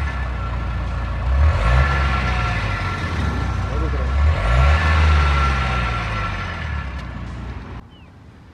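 Renault Duster's 1461 cc four-cylinder dCi diesel engine heard at the tailpipe, running steadily and revved up briefly twice, about a second and a half in and again around the middle.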